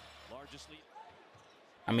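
Faint basketball game broadcast audio: a ball dribbling on a hardwood court with faint commentary underneath. A man's voice comes in loudly near the end.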